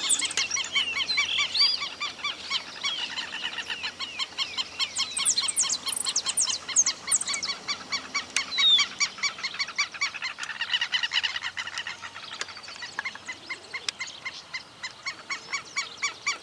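Many wild birds calling at once in a rural field: rapid strings of short, evenly repeated notes with a few rising and falling whistles, fuller in the first half and thinning out later.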